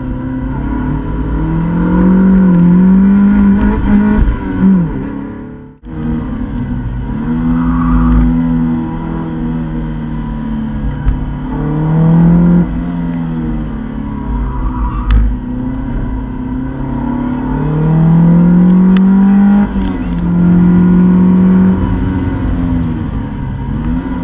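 Opel Speedster's naturally aspirated 2.2-litre four-cylinder engine, heard from inside the cabin, revving hard on track: several rising pulls, each cut off by a drop in pitch at a gear change. About six seconds in, the sound breaks off for an instant.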